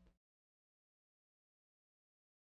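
Silence: the fading end of the race soundtrack cuts off a moment in, and nothing is heard after that.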